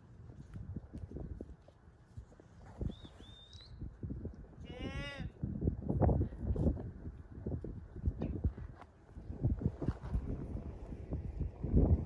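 An Angus calf bawls once, briefly, about five seconds in, over irregular low thumps and rumble.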